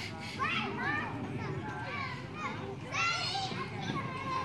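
Children's high-pitched voices chattering and calling without clear words, with a louder, higher call about three seconds in.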